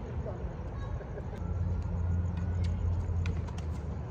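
Low rumble of road traffic that swells through the middle, with a few faint sharp taps.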